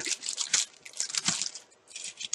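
Clear plastic packaging bag crinkling in a run of short crackles as it is pulled open by hand, with a brief lull near the end.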